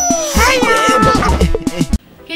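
Short intro jingle: electronic music with swooping, pitch-bending tones over a repeating bass beat, cutting off suddenly at the end.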